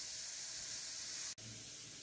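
Steady hiss of steam venting from the pressure valves of an Afghan kazan, a cast-aluminium pressure cooker, that has come up to pressure and is simmering on low heat. A brief click breaks the hiss a little past halfway.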